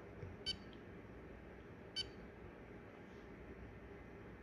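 Two short electronic key beeps, about a second and a half apart, from a handheld digital oscilloscope as its buttons are pressed to adjust the scale.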